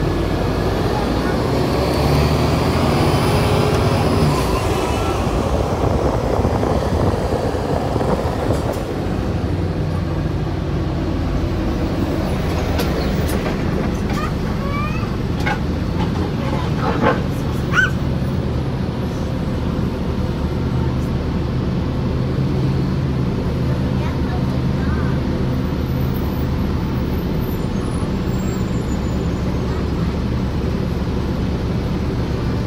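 A 2008 New Flyer diesel transit bus heard from inside while it drives, with a steady low engine drone throughout. A whine rises and falls over the first few seconds, and a few brief high squeals come near the middle.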